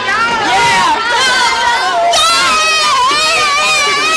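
A group of children shouting and cheering together at close range, many high voices overlapping without a break.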